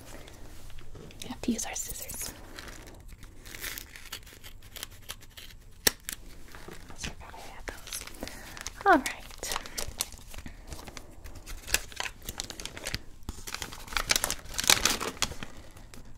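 Paper packaging crinkling and rustling in irregular crackles as a hair-dye kit and its instruction leaflet are handled and unfolded, loudest near the end.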